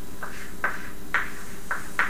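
Chalk writing on a blackboard: about five short taps and scrapes, roughly half a second apart, as letters are written, over a steady low room hum.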